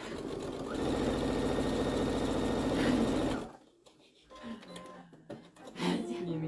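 Brother domestic sewing machine stitching a seam through pieced cotton quilt patches. It runs for about three and a half seconds, picking up speed about a second in, then stops abruptly.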